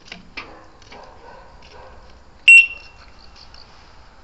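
A single short, loud electronic beep from the electric three-wheeler's buzzer, about two and a half seconds in, with a few faint clicks before it.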